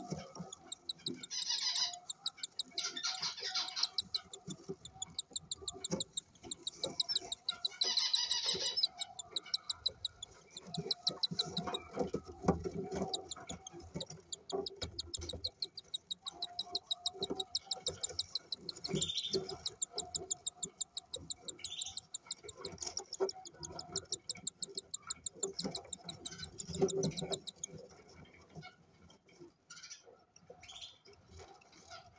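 Five-day-old cockatiel chick begging while a parent feeds it: a rapid string of high ticking cheeps, with louder raspy bursts several times in the first nine seconds.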